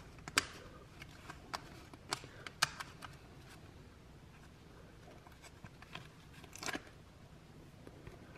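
Plastic snap-on lid of a pimento cheese tub being pried up around its rim: scattered faint clicks and snaps, with a louder snap near the end as the lid comes free.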